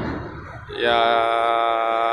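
A man's voice holding one long, drawn-out "ya" at a steady pitch, starting about a second in, after a fading low background rumble.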